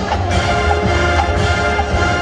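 College marching band playing live, its brass section holding sustained chords over a strong low bass.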